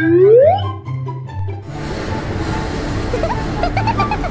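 Light cartoon background music with a rising, whistle-like sound effect at the very start. About a second and a half in, the music stops and a steady street-traffic and car-running noise takes over.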